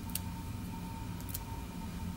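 Quiet steady room hum with two faint light clicks about a second apart, as grapes are picked off the bunch and set down on a plastic cutting board.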